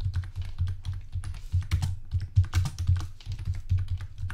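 Typing on a computer keyboard: a quick, irregular run of key clicks, about four or five keystrokes a second, each with a low thud.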